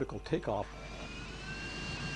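The last word or two of a man's speech, then a steady jet-engine rush with a high turbine whine that starts about a second in and rises slightly in pitch.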